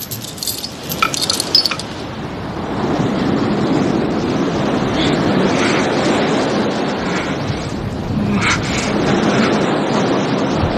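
A few metallic clinks in the first two seconds, then the steady rush of ocean surf breaking on a beach, from a film soundtrack.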